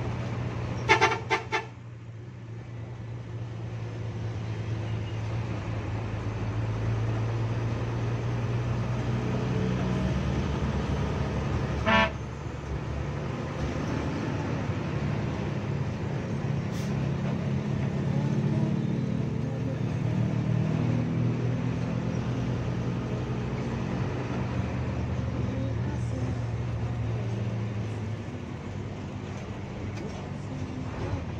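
Bus engine running steadily, heard from the driver's cab, its sound building over the first ten seconds. Three quick horn toots come about a second in and one short toot at about twelve seconds.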